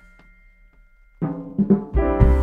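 Live church ensemble of strings, piano and percussion: a quiet pause with a faint held note, then the band comes back in loudly a little over halfway through with drum strokes.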